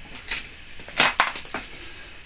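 Handling noise: a few sharp clicks and knocks as hands pick up and move a plastic Socket & See plug-in socket tester and its mains lead on a bench, the loudest knock about a second in.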